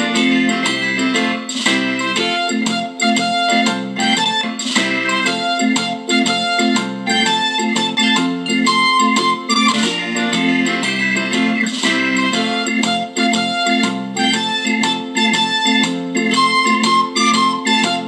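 Instrumental music, plucked guitar with keyboard, played through the small built-in Bluetooth speaker of an LED disco-ball light. It sounds thin, with almost no deep bass.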